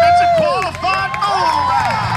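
Several people's voices calling out and talking over one another in the arena, with no clear words, over a steady low hum.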